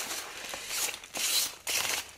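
Loose packing peanuts rustling and crunching in a cardboard box as hands dig through them, in several short bursts.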